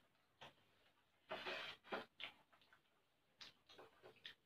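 Faint, scattered clicks of forks and spoons against plates and bowls while eating, with one longer, noisier sound about a second and a half in.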